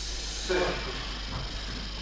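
Mostly speech: a single spoken Russian word about half a second in, with a brief hiss just before it.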